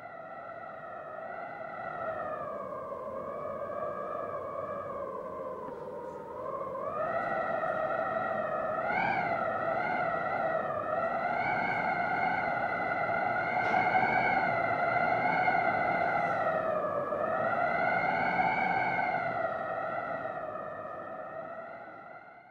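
Outro music: a single sustained electronic tone, theremin-like, wavering slowly in pitch. It fades in, dips in pitch twice and fades out at the end.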